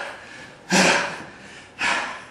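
A person breathing hard from exertion: two sharp, breathy exhalations about a second apart.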